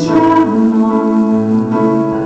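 Electronic keyboard played with a piano sound, sustained chords and notes ringing.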